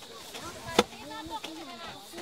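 A single sharp chop of a long-handled, bamboo-shafted metal spade blade driven into a grassy earth bank, about a second in, with faint voices in the background.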